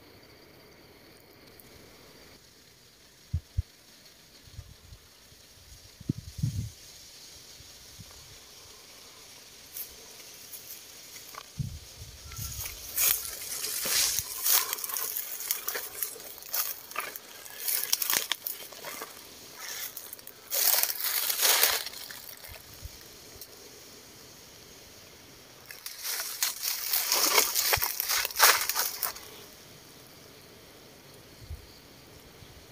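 Footsteps crunching and rustling through dry leaf litter and brush, coming in irregular bursts that are loudest through the middle and again near the end, with a few low thumps before the crunching starts.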